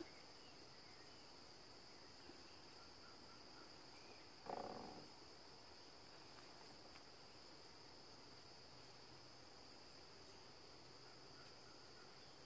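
Near silence: faint room tone with a steady high-pitched whine, and one brief soft sound about four and a half seconds in.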